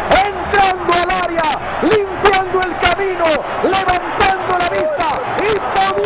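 Male football commentator talking fast and excitedly in Spanish over crowd noise, calling a goal as the players celebrate.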